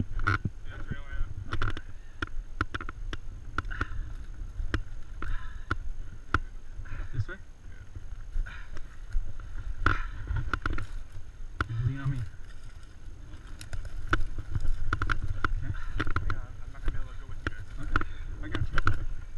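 Footsteps scuffing and crunching on a dry dirt trail as people walk slowly, with irregular sharp clicks and scrapes. Wind rumbles on the camera microphone throughout.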